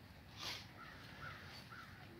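Faint bird calls: one harsh, rasping call about half a second in, then a few short, faint chirps.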